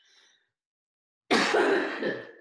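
A woman coughing: one harsh burst, a little under a second long, starting about a second and a half in, from a sudden bout of coughing.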